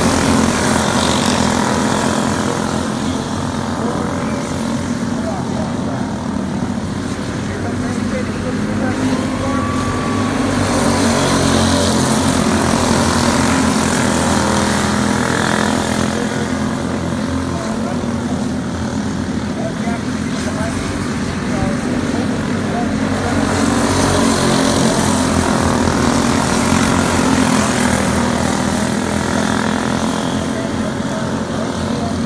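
Engines of a pack of box-stock dirt-track karts racing, a steady buzz that swells each time the pack comes round close, about every twelve seconds.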